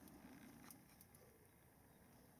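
Near silence: room tone, with a couple of faint ticks.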